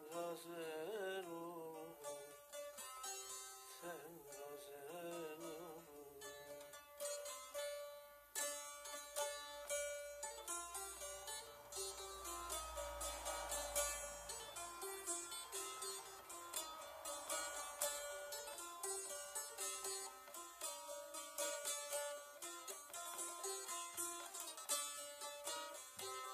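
Bağlama (saz) played solo, a quick picked and strummed melody on its metal strings as an instrumental passage of a Turkish folk song.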